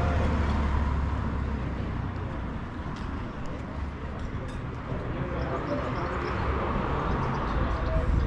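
A car drives past close by, its engine and tyre rumble fading over the first two seconds, then steady street ambience.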